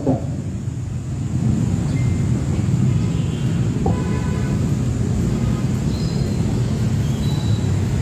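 Steady low rumble of outdoor background noise with no clear single source, with a few faint brief higher tones about three to four seconds in.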